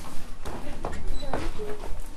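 Footsteps on a theatre stage floor, a few separate knocks, over a steady low rumble.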